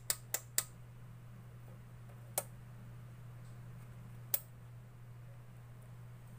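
Switch on a homemade CRT picture-tube tester clicking: three quick clicks at the start, then two single clicks about two seconds apart, over a steady low electrical hum.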